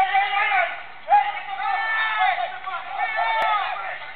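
People shouting and screaming in high, strained voices, with no clear words, during a street scuffle between a guardsman and a man.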